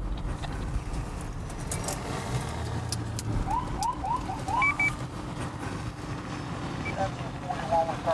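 Steady road and engine rumble heard inside a moving police patrol car. About four seconds in come four short rising chirps and a pair of brief high beeps.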